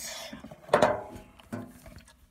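Handling noise from a phone being moved: rustling, then a loud thump about three quarters of a second in and a few softer knocks.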